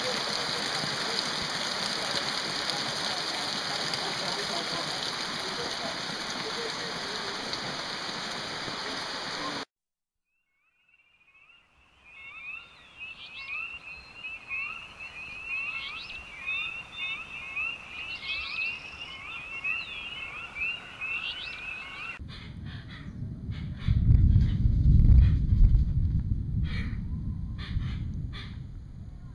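Heavy rain falling on a lake surface, cutting off suddenly about ten seconds in. After a brief silence, birds chirp repeatedly in short rising notes, about two a second. Near the end a loud low rumble takes over.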